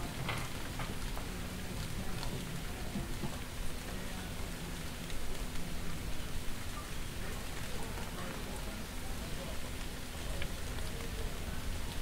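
Steady rain falling on a street, with scattered drops ticking.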